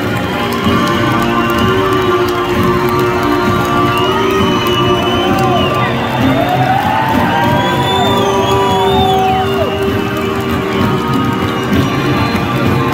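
Live band music in an arena, with the crowd cheering and whistling over it; several long rising-and-falling whistles cut through in the middle.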